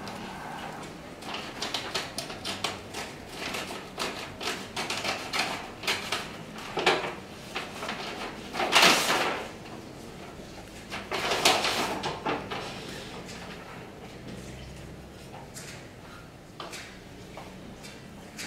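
A manila paper envelope being opened and its papers pulled out and handled: a run of short rustles and crinkles, with two louder, longer swishes of paper about nine and eleven and a half seconds in.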